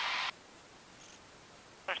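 Hiss on the cockpit intercom line cuts off sharply about a third of a second in, leaving near silence with a faint, brief high tone around the middle. Speech returns on the intercom just before the end.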